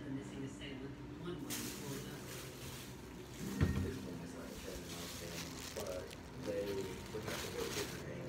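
Rustling handling noise from a phone carried while walking, over muffled voices in the background, with one sharp thump about three and a half seconds in.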